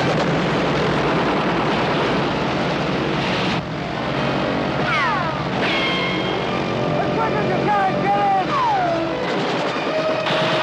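Propeller aircraft engines running loud and steady, with men shouting over them. The noise drops about three and a half seconds in, and shouts with falling pitch follow.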